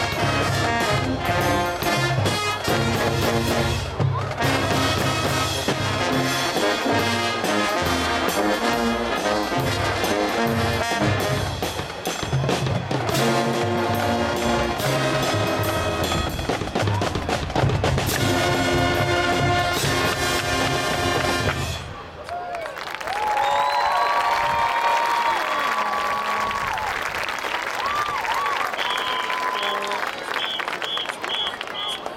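Marching band playing brass with drums and percussion, ending on a held final chord that cuts off sharply about three-quarters of the way through. The crowd then cheers and applauds, with whoops rising above the noise.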